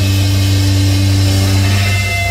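Amplified electric guitar and bass of a live rock band holding a sustained low distorted chord that rings out as one steady drone.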